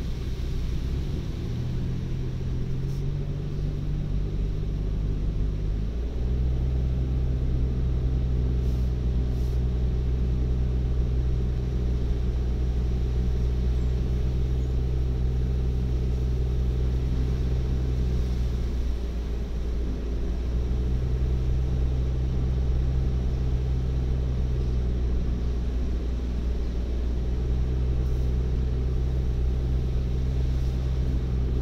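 Car engine and tyre noise heard from inside the cabin while driving: a steady low drone whose pitch rises over the first few seconds, steps at about six seconds and falls away briefly twice later as the engine speed changes.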